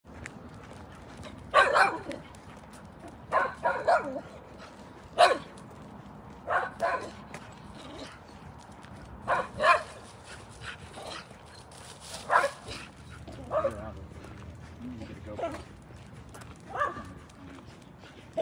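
A dog barking in short single and double barks, one every one to three seconds.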